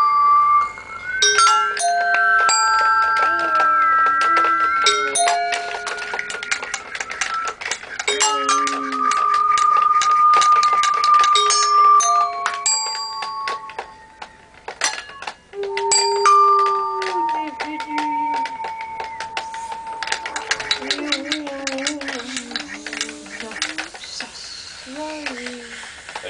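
Improvised experimental chorus: several held, bell-like tones stepping from pitch to pitch, with lower voices sliding up and down beneath them, over a dense patter of clicks. It thins out briefly about two-thirds of the way through, then builds again.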